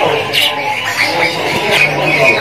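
Several caged songbirds chirping and calling at once, short overlapping calls, in the steady din of a crowded bird-market kiosk.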